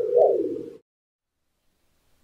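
Short intro-logo sound effect: a low pitched tone that swoops up and back down twice and cuts off under a second in.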